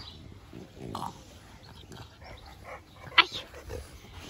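French bulldog making short dog noises as it mouths and chews a rubber octopus toy, with one sharp, much louder sound about three seconds in.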